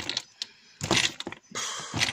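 Small glass dropper and swing-top bottles clinking and rattling against each other in a plastic storage drawer as it is moved. A short cluster of clicks comes about a second in.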